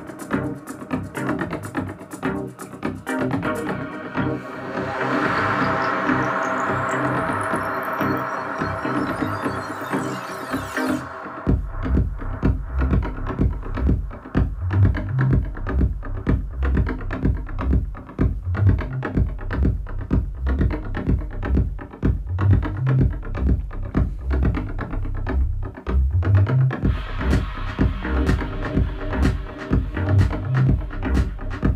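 A freshly built deep house track playing back from Ableton Live. It opens with synth chords and hi-hats while a rising sweep climbs. About eleven seconds in, the sweep cuts off and the kick drum and bass come in with a steady house beat.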